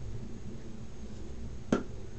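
A single sharp click near the end, over a low, steady room hum.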